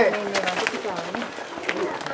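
People talking in low voices, with a few light clicks.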